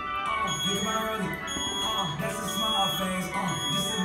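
Gym interval timer beeping a countdown: four short high beeps a second apart, over music with singing.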